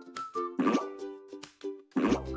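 Light, cheerful children's background music with a simple pitched melody, punctuated by short pop sound effects as a countdown ticks by.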